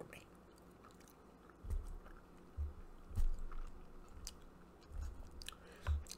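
A few soft, low thumps and faint clicks from small movements close to the microphone, over a faint steady hum.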